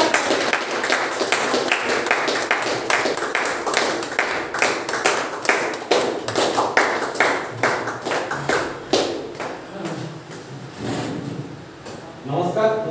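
Hands clapping in a steady rhythm, about three claps a second, fading out near the end with a few voices.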